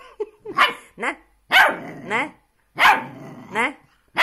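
A puppy barking and yowling back in a quick run of short, pitched vocalisations, about seven in four seconds, several of them rising in pitch at the end.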